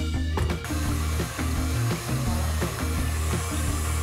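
KitchenAid stand mixer running steadily with its wire whip, whipping fresh cream and sugar into whipped cream. The steady whir comes in about half a second in, under background music with a steady bass line.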